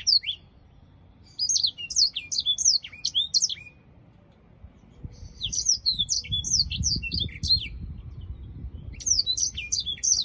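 Caged black-throated canary singing: bursts of rapid, high twittering song made of quick downward-sweeping notes, three phrases separated by short pauses.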